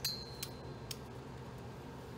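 Three light clicks about half a second apart, the first with a thin high ring that holds until the third, from small hard items handled on a tabletop, over a steady low hum of the room.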